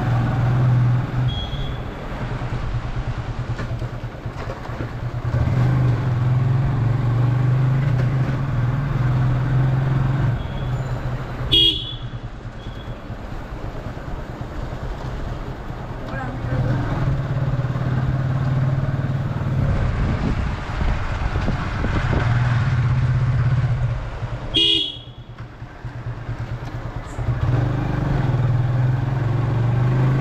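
Motorcycle engine running under way, its note swelling and easing with the throttle, with two short horn toots, one about twelve seconds in and one near twenty-five seconds, the engine easing off briefly after the second.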